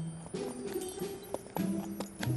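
Scattered clip-clop hoofsteps of cartoon ponies walking, as short light clicks, over soft background music.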